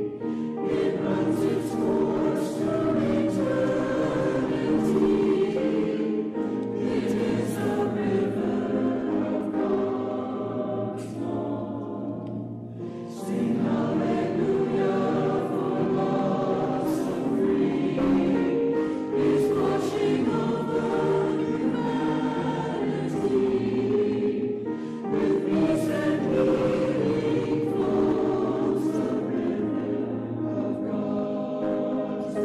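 A choir singing in held, flowing phrases, with short dips in level about twelve seconds in and again near the end.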